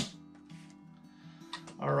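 Soft background guitar music with steady held notes. At the very start the last of a single sharp shot dies away: an HPA-powered JG Bar 10 airsoft sniper rifle fitted with a Wolverine Bolt M, fired into a bucket target. A brief click about one and a half seconds in.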